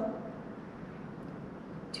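Steady faint background hiss of room tone in a pause between words, with a woman's voice trailing off at the very start and starting again near the end.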